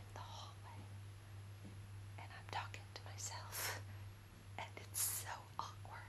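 A woman whispering a few soft, breathy words close to the microphone, over a steady low electrical hum.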